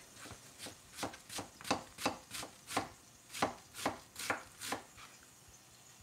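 Chef's knife chopping through the thick white stem of a Chinese cabbage onto a cutting board, cutting it into julienne strips: a steady run of sharp knocks, about three a second, that stops about a second before the end.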